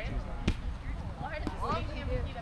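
A rubber kickball being kicked: one sharp thump about half a second in, with a fainter knock about a second later, over distant shouts from players.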